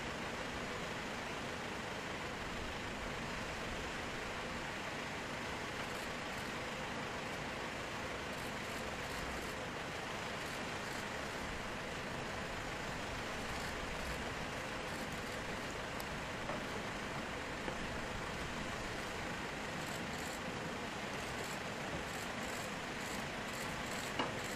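Steady hiss and hum of a C-17 transport aircraft running on the flight line, with a few faint clicks near the end.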